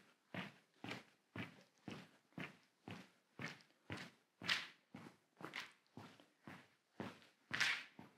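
Footsteps of trainers on a smooth, hard hall floor at a steady walking pace, about two steps a second, with a couple of slightly louder steps near the middle and end.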